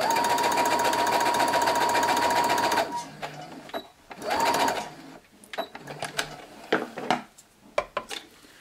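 Electric sewing machine stitching a seam, running steadily for about three seconds with a motor whine and rapid needle strokes, then stopping. A second short burst follows a little after four seconds, and light clicks come after it.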